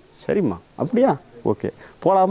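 Steady, high-pitched chirring of insects, with a man talking in short phrases over it.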